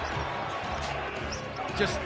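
A basketball being dribbled on a hardwood court over a steady background of arena crowd noise.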